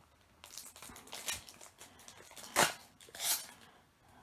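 Foil booster-pack wrapper crinkling and being ripped open by hand, with two short sharp tears in the second half.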